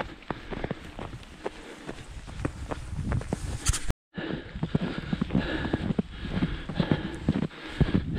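Running footsteps on snow, a steady rhythm of about three footfalls a second, with a brief dropout to silence about halfway through.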